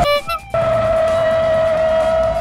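Tyres squealing as the Lancer Evolution slides out of shape: one steady, slightly rising note that starts about half a second in and holds past the end, over background music.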